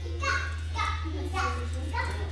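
Indistinct background speech in short bursts, over a steady low hum.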